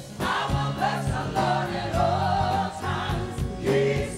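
Gospel choir and congregation singing a worship song together, over a band's steady beat and bass line.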